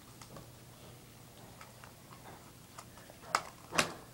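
Small ticks and clicks of hands working at the paper twist ties on a toy package, with two louder clicks a little after three seconds in and near the end.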